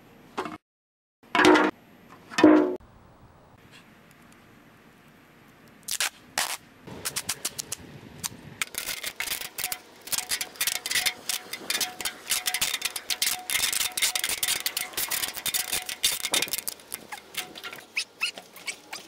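Packaging tape pulled off the roll and wrapped around the joined necks of two large water-cooler bottles: a rapid crackling rip that starts about six seconds in and runs until near the end, with a faint steady screech in the middle stretch. Two short loud sounds about a second apart come near the start.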